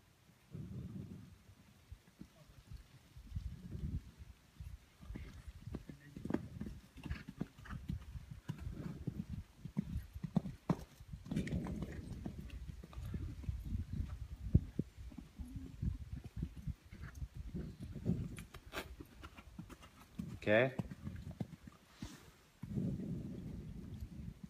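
Hoofbeats of horses cantering on a sand arena: irregular dull thuds, some closer and louder, with light clicks between. About 20 seconds in, a short wavering high-pitched call.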